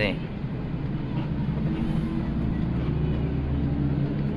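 Steady low engine drone and road rumble heard inside the cabin of a coach bus moving slowly in traffic.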